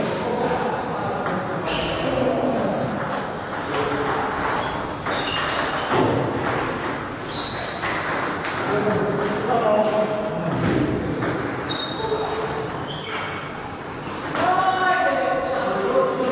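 Table tennis balls being struck by bats and bouncing on the tables, short high pings at irregular intervals from several rallies at once, with people talking throughout.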